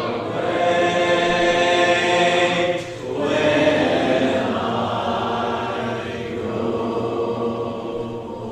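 Church congregation singing a hymn a cappella, many voices together with no instruments: the invitation song at the close of the sermon. There is a brief break between phrases about three seconds in.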